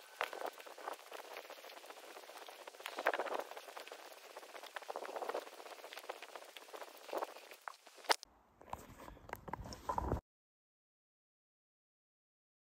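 Quiet footsteps rustling and crackling through grass and forest undergrowth, irregular steps with a few louder crunches. After a sharp click about eight seconds in there is a short stretch with a low rumble, then the sound cuts out into silence about ten seconds in.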